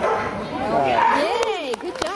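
A dog barking repeatedly in high yips that rise and fall in pitch, several in quick succession.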